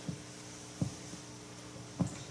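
Handheld microphone being handled as it is passed from one person to another: a few dull thumps over a steady hum.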